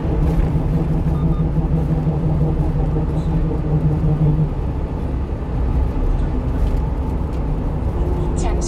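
Steady engine and road noise of a small truck running at highway speed, heard from inside the cab. A low steady drone drops away about halfway through, leaving the rumble.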